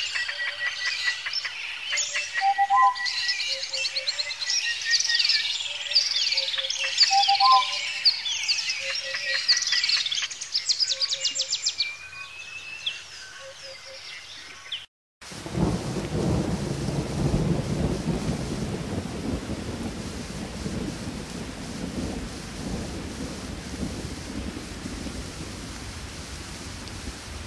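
A chorus of birds chirping and trilling, with a short low whistled call repeating, cuts off abruptly about halfway through. After a brief silence comes a steady rain-like hiss with a low thunder rumble that swells and slowly fades.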